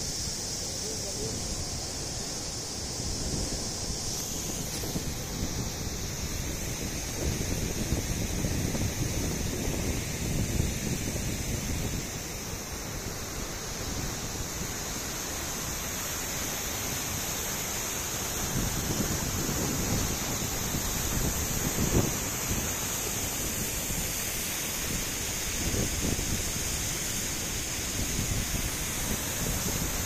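Floodwater of the overflowing Tapi river rushing and churning over a weir in a steady wash of water noise, with wind buffeting the microphone in low gusts.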